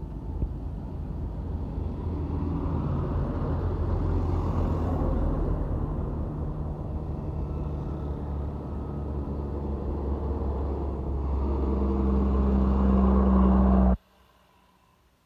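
Heavy diesel trucks driving past close by, engines rumbling over tyre noise. The sound swells about four seconds in, eases off, then grows loudest near the end as another truck draws near, and cuts off suddenly.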